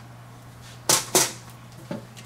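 Two quick swishes of paper being slid and handled on the desk, a quarter second apart, about a second in, with a smaller one near the end, over a faint steady hum.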